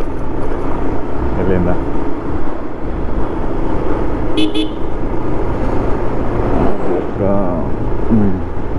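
Bajaj Pulsar 150 single-cylinder motorcycle running at road speed with wind rush on the microphone; about halfway through, a vehicle horn gives two short toots.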